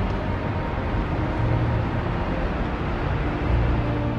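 City street traffic: a steady rush of passing vehicles, with low rumbling swells.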